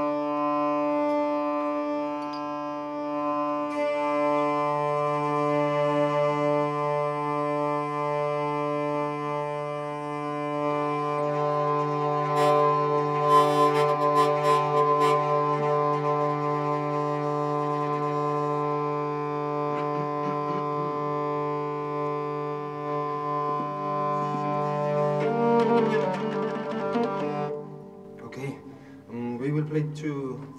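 Hurdy-gurdy playing a steady drone with a slowly changing melody over it. The music dies away just before the end.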